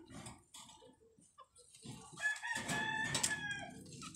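A rooster crowing once, a drawn-out call that starts about two seconds in, lasts over a second and drops in pitch at the end.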